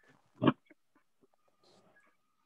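A single short, sharp noise about half a second in, followed by a few faint clicks, over the faint background of an online meeting.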